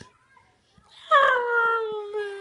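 Dog giving a long, high squeaking whine that starts about a second in and slides slowly down in pitch.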